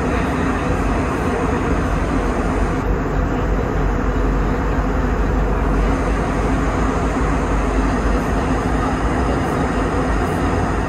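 Airliner cabin noise in flight: a loud, even rush of engine and air noise with a steady low hum.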